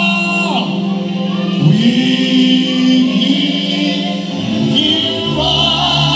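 Live gospel praise-and-worship music: a group of singers with a band, voices and held chords, with a deeper bass note coming in near the end.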